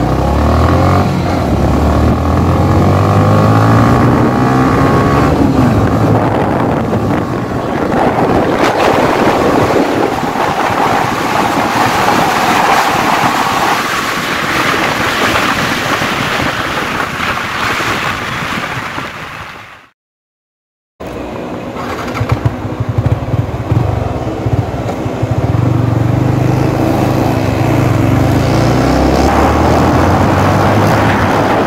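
Yamaha R15's single-cylinder engine accelerating hard up through the gears, revs climbing, with a steady rush of wind noise as the speed builds. The sound drops out completely for about a second two-thirds of the way through, then the engine is heard again at lower speed.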